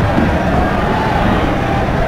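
Loud, steady hubbub of a large crowd talking and moving about in a big indoor hall, with a low rumble underneath.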